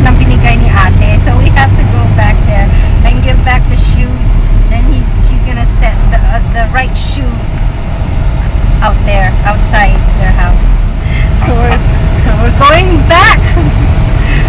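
Car engine running, heard inside the cabin as a steady low rumble, with voices and laughter over it.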